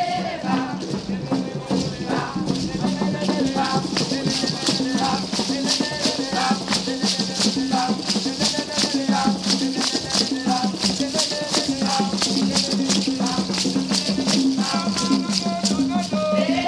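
Music with rattles shaking in a quick, steady rhythm, over other instruments and voices.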